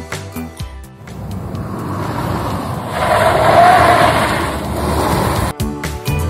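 Background music with a beat, broken off by a rushing noise that swells for about four seconds and then cuts off suddenly as the music comes back in.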